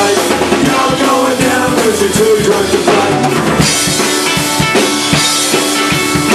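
Live Irish pub-rock band playing an instrumental passage: accordion and strummed strings over a driving drum kit with kick and snare. About three and a half seconds in, the sound gets brighter at the top.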